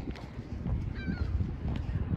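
A Canada goose honks once, a short call about a second in.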